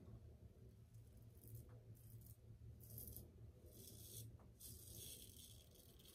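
Faint scraping of a Merkur 34C double-edge safety razor shaving lathered stubble on the cheek: a handful of short strokes spaced about a second apart.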